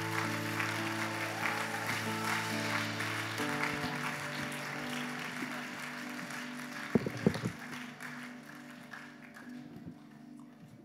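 Audience applause over soft sustained keyboard chords, the clapping thinning out and dying away. The chord changes a few seconds in, and a couple of sharp knocks stand out about seven seconds in.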